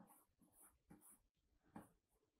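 Faint scratching and tapping of a stylus on a drawing tablet as several short strokes are drawn.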